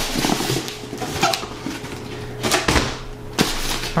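Cardboard shipping box being lifted off a foam-packed computer case: irregular cardboard scraping and rustling, with a louder rustle about two and a half seconds in and a short knock shortly after.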